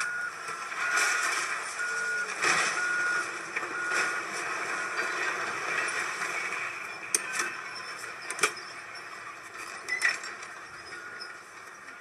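Construction-site noise: a backup alarm on heavy machinery beeping repeatedly at a high pitch over a steady engine din, with a few sharp metallic clanks. The beeps mostly come in the first half. The sound is a film soundtrack played through a screen's speaker.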